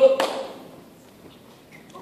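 A man's voice calls out "Go" at the start, with a short sharp tap just after it, then only low room sound in a large hall.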